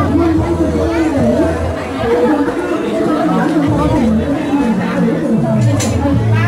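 Indistinct chatter of voices talking.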